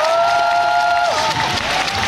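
Audience applauding. A drawn-out voice holds one note over the clapping for about the first second.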